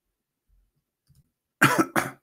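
A man coughing twice near the end, the first cough the louder, after a near-silent pause.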